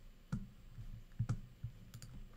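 A handful of irregular clicks and soft knocks, the loudest pair about a second and a quarter in.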